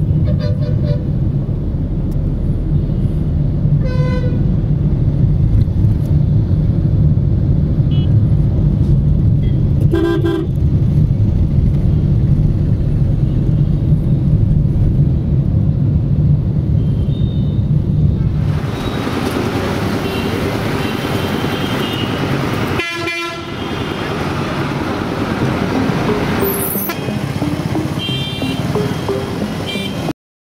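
Engine and road rumble of a moving vehicle heard from inside, with vehicle horns tooting several times in the traffic, clearest a few seconds in, around ten seconds, and twice in the last third. About two-thirds of the way through, the low rumble drops away and a brighter street noise takes over.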